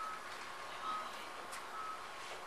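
A faint electronic beep at one steady high pitch, repeating about once a second: three short beeps.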